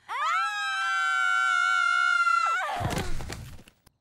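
A cartoon girl's long, high excited scream, held at one pitch for about two and a half seconds, then a falling whoosh sound effect.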